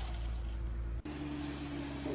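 Heavy truck engine running, a deep rumble. About halfway through it cuts abruptly to a different truck's steadier engine hum.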